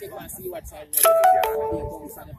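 A short electronic chime about a second in: three quick stepped notes, the last held, over people talking.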